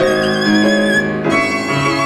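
Live tango music: a violin plays the melody over grand piano accompaniment. The violin holds a long note with vibrato, then moves into a new phrase about a second and a half in.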